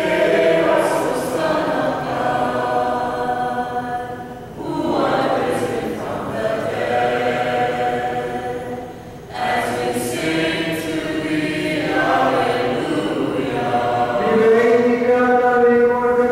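Group of voices singing a liturgical chant together in unison. The phrases are broken by two short breaths, and a louder held note comes near the end.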